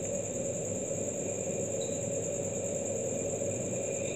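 Steady background hiss and hum with a constant thin high-pitched whine, without any distinct events.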